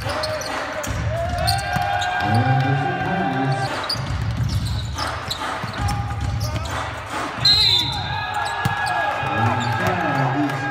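Basketball court sounds: sneakers squeaking on the hardwood, a ball bouncing and players shouting. A short, sharp high tone with a jump in loudness about seven and a half seconds in fits a referee's whistle stopping play.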